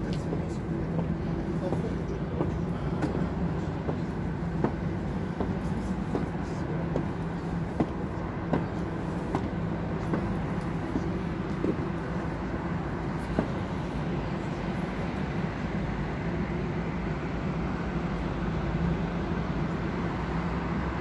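Steady hum of city street traffic, with occasional faint clicks.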